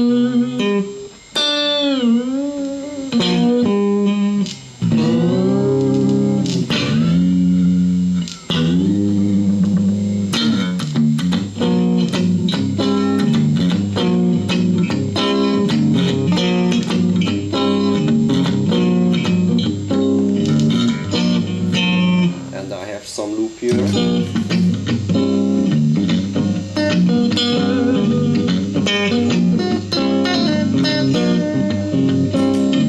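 Electric guitar played through an amplifier, its Fender-style tremolo fitted with headless saddles: whammy-bar dips bend the notes down and back up early on, then it plays riffs and chords with vibrato from the arm. An electrical hum from a grounding problem runs underneath.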